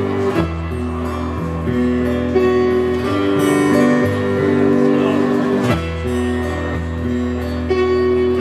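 Instrumental break in a live folk-rock song: strummed acoustic guitar with bowed cello and keyboard holding sustained chords, which change about half a second in and again near six seconds.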